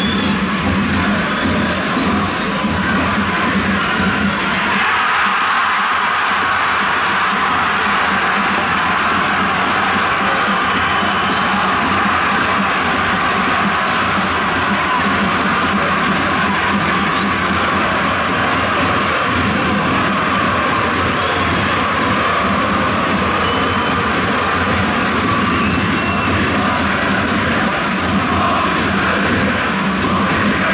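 A large crowd of football supporters singing and chanting together in a stadium: a steady, loud mass of voices.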